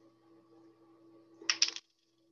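A quick cluster of three or four sharp clicks about a second and a half in, from small hard craft pieces being handled.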